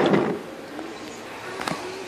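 Faint rattle of wooden toy trains being handled and rolled on wooden track, with one sharp click near the end.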